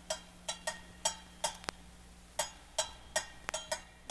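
Hand percussion playing a syncopated pattern on its own as the song's intro: sharp, ringing strikes, roughly three to four a second with gaps, over a steady low hum.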